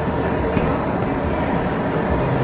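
Arrow mine train roller coaster running along its steel track, a steady rolling noise of the train.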